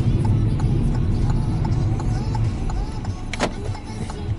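Road and tyre rumble inside a moving car's cabin, dying away as the car slows to a stop, with a sharp click about three and a half seconds in.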